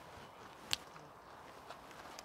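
Quiet outdoor background with one short, sharp click about three-quarters of a second in.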